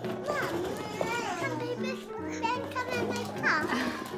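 Young children's wordless vocal sounds, high squeals and babbling with rising and falling pitch, over gentle background music with held notes.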